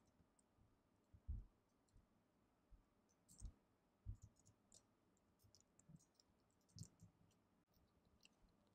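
Faint, scattered clicks of a computer keyboard and mouse, a few seconds apart.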